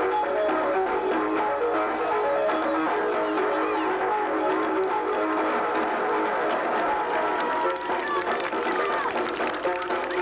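Marching band playing a tune on the field: a steady run of held notes. The playing thins near the end as crowd voices rise.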